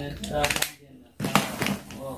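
A single sharp click about a second in as the charger plug is pushed into the power socket of a UV/LED nail lamp, the moment the lamp gets power.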